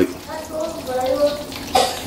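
Chicken frying in a skillet of hot oil: a steady sizzle, with a faint voice-like murmur in the middle and a short clank near the end.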